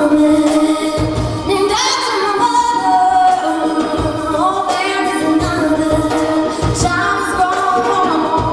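Live band playing a slow song: a woman singing lead over electric guitar, bass guitar, drums and keyboard, with the bass notes pulsing underneath.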